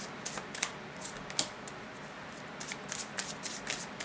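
A deck of oracle cards being shuffled by hand: light, quick card slaps and clicks in uneven clusters.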